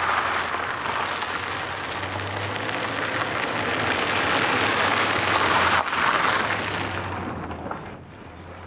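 Renault 4 van driving on a gravel road, its engine and tyre noise a steady hiss that grows louder as it comes closer and fades away near the end.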